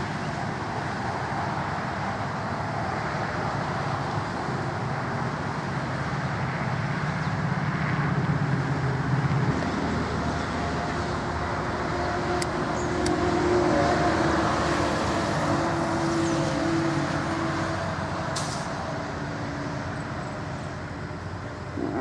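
Road traffic over a steady rushing background, with vehicles passing: a low engine hum from about six to nine seconds in, and a higher engine note, the loudest part, from about twelve to eighteen seconds. A few faint clicks.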